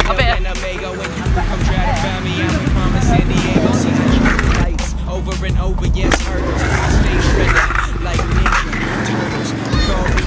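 Stunt scooter wheels rolling on a concrete skate-park bowl, with occasional knocks, heard under music and voices.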